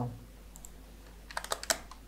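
Computer keyboard typing: a quick run of about six key clicks about a second and a half in.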